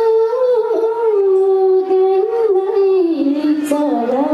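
A woman singing one long, unbroken phrase of a Nepali Teej song through a microphone, her voice wavering gently in pitch and dropping lower about three seconds in.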